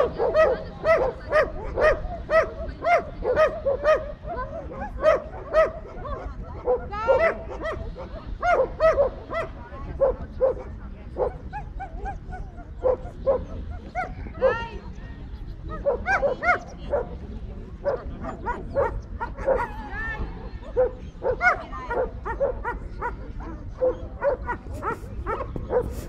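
German Shepherd barking at a protection-work helper, short barks about two a second at first and more spaced out after about ten seconds, with a couple of higher, whining yelps mixed in.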